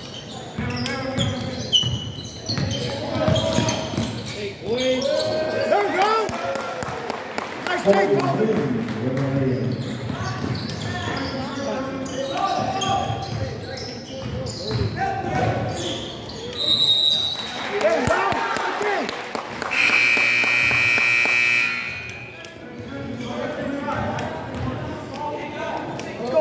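Basketball game in a gym: a ball dribbling and sneakers squeaking on the hardwood under players' and spectators' voices. A short high tone sounds about seventeen seconds in, and a steady buzzer tone holds for about two seconds a little later.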